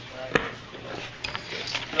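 A sharp knock about a third of a second in, then a fainter click about a second later, with faint voices.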